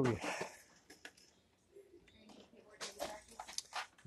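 Faint handling noise: a few short clicks and rustles near the end as the phone moves over items on a store shelf, with a faint voice in between.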